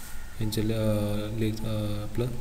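Speech only: a man lecturing, his voice drawn out into a long, steady-pitched held syllable and then a shorter one.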